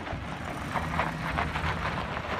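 Chevrolet Silverado pickup truck's engine running as it pulls slowly forward with a car trailer, with a quick rattle in the second half.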